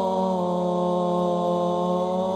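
Male voice singing Islamic sholawat, amplified through a microphone, holding one long note whose pitch sinks a little at first and then stays steady, with no percussion.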